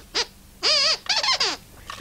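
High-pitched squeaker voice of a dog glove puppet: a short squeak, then a longer squeak with a warbling, wobbling pitch, standing in for speech as he shows off what he has found.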